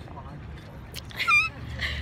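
A short, high-pitched, wavering squeal about a second in, with a softer vocal sound just after, over the steady low hum inside a stopped car.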